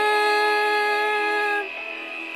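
A woman singing one long held note over a karaoke backing track; the note stops about one and a half seconds in, leaving the backing music.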